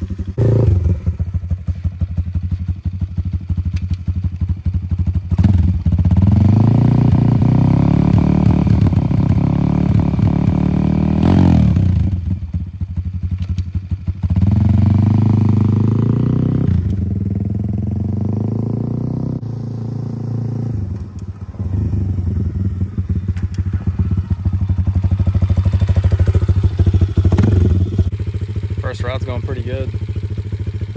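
Brand-new YCF Pilot 150e pit bike's single-cylinder four-stroke engine running and being ridden, its pitch rising and dropping several times as it is revved up and eased off.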